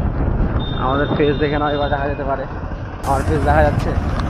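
Steady low rumble of a motorbike being ridden along a street, with road and wind noise. Voices talk over it twice.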